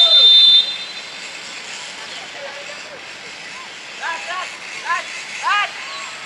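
A referee's pea whistle gives one short, steady blast that cuts off about half a second in, signalling the free kick to be taken. Players then shout several short calls in the last two seconds.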